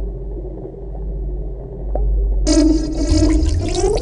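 A low, steady, watery rumble, a soundtrack sound effect. About two and a half seconds in it is joined by a louder layered sound that sweeps upward in pitch toward the end.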